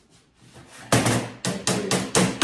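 A hammer striking a bolt into the metal frame of a tree-stand chair to get it to catch. Four quick, sharp strikes come in the second half, each ringing briefly.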